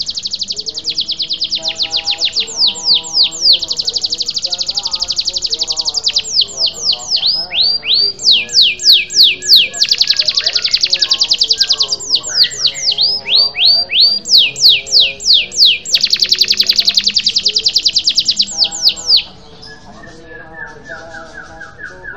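Domestic canary singing loudly in long rolls of rapid repeated notes, broken by runs of downward-sweeping notes. The song stops about 19 seconds in, leaving only faint chirps.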